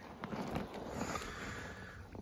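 Faint, steady outdoor background noise with no single clear source.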